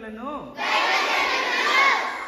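A single voice, then from about half a second in many children's voices praying aloud together, loud and overlapping.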